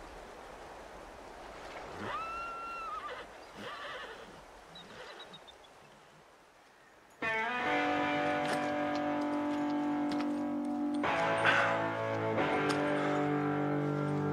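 Solo electric guitar score: long sustained, ringing notes come in suddenly about seven seconds in, with a second struck chord around eleven seconds. Before it, faint outdoor ambience with a short tonal animal call about two seconds in.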